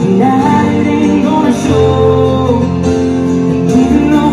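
Live acoustic music in an arena: a guitar and a piano playing with singing. The sound is picked up from far back in the stands.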